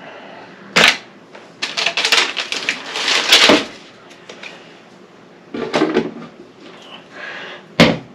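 Plastic craft supplies clicking and clattering as they are picked up, handled and set down while being sorted. There is a sharp knock about a second in, a busy run of clicks over the next couple of seconds, and another sharp knock near the end.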